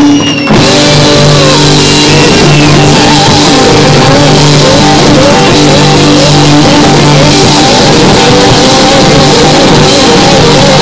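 Live rock band playing loud: electric guitars, bass guitar and drum kit. The sound drops out briefly right at the start, then the full band comes straight back in.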